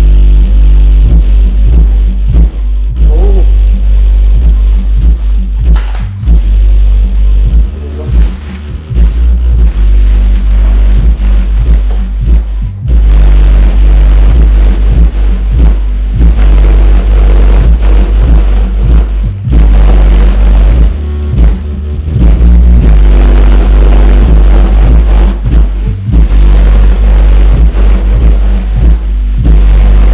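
Bass-heavy music played loud through a Genius Audio N4-12S4 12-inch shallow-mount car subwoofer in a ported box. The deep bass dominates, with a few brief drops in the beat.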